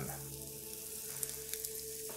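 Flour-dredged beef short ribs searing in hot olive oil in a stainless-steel pan: a steady sizzle.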